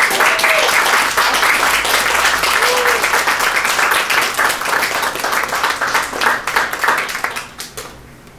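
Audience applauding after a song ends, dense clapping with a couple of short vocal cheers, thinning out and dying away near the end.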